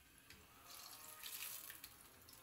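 Oil sizzling faintly in a frying pan on a gas burner, swelling a little in the middle, with a few light clicks of a metal utensil in the pan.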